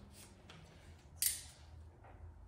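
A small plastic packet being handled: a few faint crackles, then one short, sharp crackle a little over a second in.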